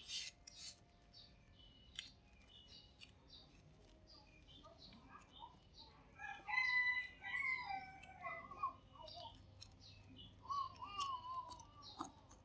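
Faint bird calls in the background: several short, wavering pitched calls in the second half. A couple of soft clicks come in the first few seconds as rice paper is handled.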